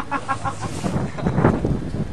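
A person laughing, a quick run of short 'ha' sounds that trails off within the first second, with a low rumble underneath later on.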